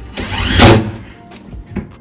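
Cordless drill running in one loud burst of about a second, driving a screw to fasten a wooden shelf.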